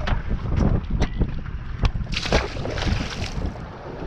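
Wind buffeting the microphone on open water, a loud irregular rumble with a few scattered clicks and a brief rush of hiss about two seconds in.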